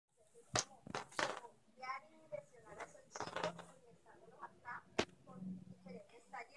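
Indistinct voices talking in short snatches, with a few sharp clicks or taps, one near the start and a single loud one about five seconds in.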